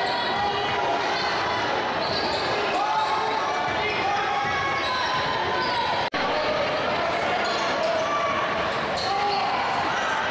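Basketball game in a gymnasium: a ball dribbling on the hardwood floor and voices of players and spectators echoing in the hall, with the sound cutting out for an instant about six seconds in.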